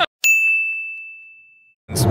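A single bright ding sound effect, struck once and fading away over about a second and a half.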